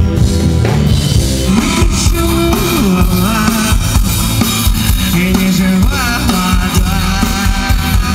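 Live rock band playing at full volume: drums, bass and guitar with a singing voice over them.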